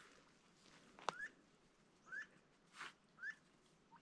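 Faint short rising peeps from ducks on the water, about one a second, with a sharp click about a second in and a brief noisy burst near three seconds.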